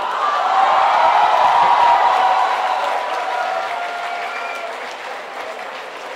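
Audience laughing and applauding after a punchline, with a few voices cheering. It swells in the first second or two, then slowly dies away.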